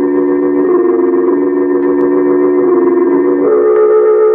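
Dramatic organ music: loud held chords that move to new chords several times, about a second in, midway and near the end.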